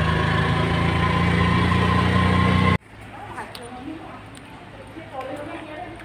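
Steady drone of a vehicle's engine heard from inside the passenger cabin, cut off abruptly about three seconds in. After that, a much quieter open-air background with faint voices and a few light clicks.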